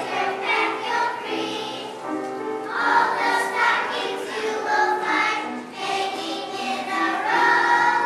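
A children's choir singing a song together, many young voices in unison.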